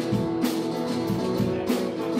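Live rock band playing an instrumental passage with no vocals: acoustic guitar and bass guitar over a drum kit, with a couple of drum hits cutting through the steady chords.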